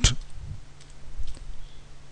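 A few faint computer keyboard keystrokes: someone typing a short word.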